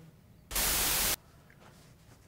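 A short burst of harsh static hiss, about two-thirds of a second long, starting and cutting off abruptly at a steady level, like a TV-static sound effect added in editing.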